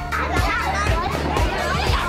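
A crowd of children's high voices shouting and chattering all at once over background music with a steady beat of about two thumps a second.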